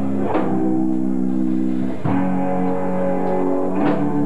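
Live metal band playing a slow passage of held guitar and bass chords. Each new chord is struck together with a drum hit, three times, just under two seconds apart, recorded on a camcorder microphone in the crowd.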